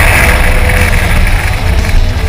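Toyota Corolla's 1.6-litre 4A-FE four-cylinder engine running, with heavy road and wind noise picked up by a camera mounted on the car's flank. The sound is loud and steady.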